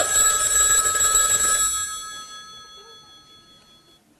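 A telephone bell rings once, a chord of steady high tones, loud for about two seconds before dying away.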